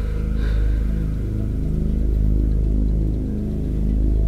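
Dark, tense film-score music: a deep bass drone under low held notes that shift every second or so.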